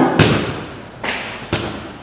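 Sharp thuds and snaps from a martial artist's short-power strikes and footwork on a wooden floor, three in under two seconds. The first is the loudest, and each rings briefly in the hall.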